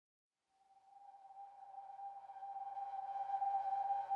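Opening of ambient background music: a single sustained high tone fades in from about half a second in and slowly swells in loudness.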